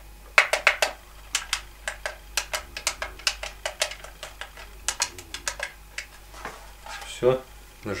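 Tactile push-button switches on a cheap car stereo faceplate clicking as they are pressed again and again, a fast run of sharp clicks, several a second, stopping about six seconds in. A freshly soldered replacement button is being checked to see that it presses properly and no longer sticks.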